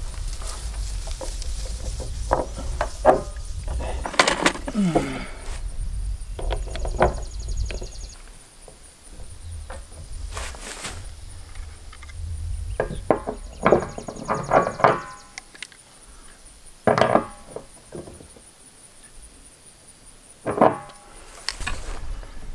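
Hollow plastic barrel being handled and worked on while a drinker nipple with a rubber seal is fitted near its base: scattered knocks and thunks on the plastic drum, with two short bursts of rapid fine clicking.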